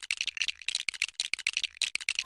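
LEGO minifigures set down on a table one after another, their plastic making a fast, uneven run of small clicks.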